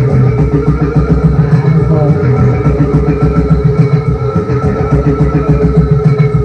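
Live band playing a droning piece: held low and middle tones under a fast, even pulse.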